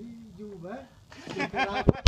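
A man talking, with a sharp knock near the end.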